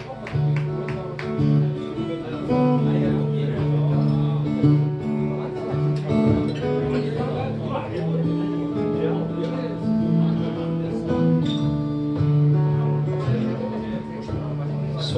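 Live blues band playing an instrumental passage, led by strummed and picked acoustic guitar with held notes in a steady groove.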